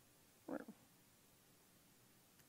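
Near silence with room tone, broken about half a second in by one short, low murmur from a person's voice.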